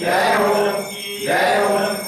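Hindu aarti chanted by voices in phrases about a second long, with a short dip between them, over a steady held tone.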